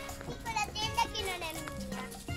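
A young girl's high voice speaking briefly, over steady background music.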